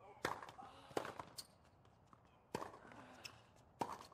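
Tennis ball being struck by rackets and bouncing on a hard court during a serve and rally: about five sharp hits, roughly a second or so apart.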